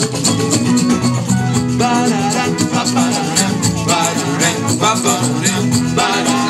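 Live band playing Afro-Latin music: electric guitar, violin and drums over a steady shaker rhythm. A voice starts singing about two seconds in.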